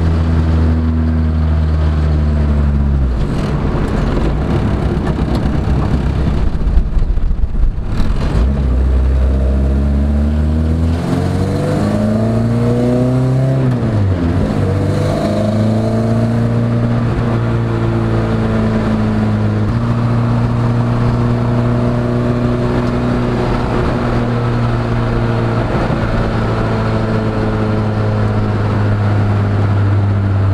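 1992 Honda Accord's four-cylinder engine breathing through individual throttle bodies, heard from inside the car while driving. About three seconds in, the note turns into a loud rasp. The pitch then climbs, dips briefly near the middle, climbs again and settles into a steady cruising note for the rest of the time.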